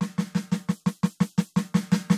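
Roland TD-17 electronic drum module's snare sound played as a fast, even roll of about eight strokes a second, each hit with a clear ringing pitch. The module's virtual muffling is switched off, so the snare rings open.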